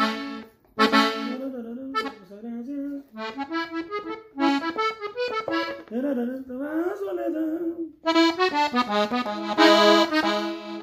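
Diatonic button accordion in E (Mi) playing a quick melodic ornament in A major: runs of short stepping notes over the bellows, with a brief break about half a second in and a denser, louder run near the end.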